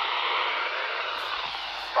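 Steady hiss from a handheld VHF radio's speaker while the 2 m repeater channel stays open between two stations' transmissions, nobody talking on it.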